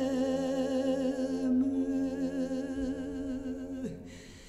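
A woman's voice in a Corsican sacred lament, holding one long sung note with a slow vibrato. The note fades away near the end.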